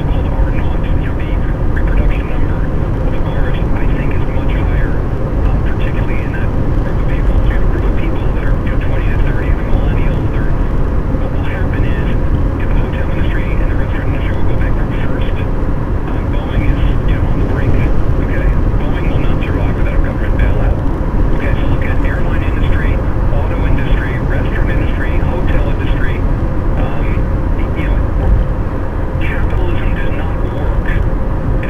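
Steady road and engine noise of a car at highway speed, heard from inside the cabin through a dashcam microphone, with indistinct voices under it.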